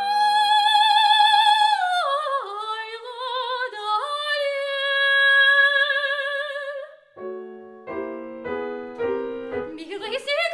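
A female opera singer holds a high note with wide vibrato, falls through a descending run, and holds a second, lower note over a soft grand piano accompaniment. Her voice stops about seven seconds in, and the piano carries on alone with a short passage of struck chords.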